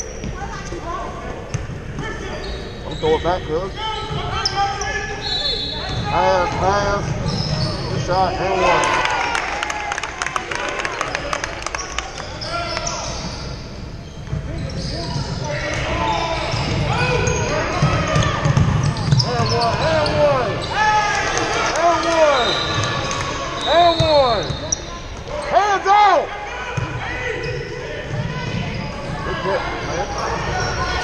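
Basketball game noise in a large gym: a ball dribbling and bouncing on the hardwood floor, sneakers squeaking in short rising-and-falling chirps, and indistinct voices calling out.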